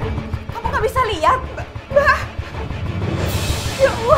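A woman crying and wailing in short, wavering sobs over dramatic background music.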